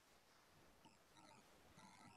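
Near silence, with only faint room tone.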